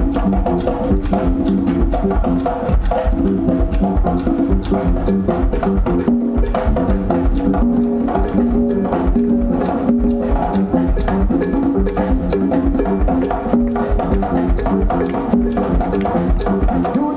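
A live band playing an instrumental passage: congas and electric bass over keyboard, with a dense, steady percussion rhythm.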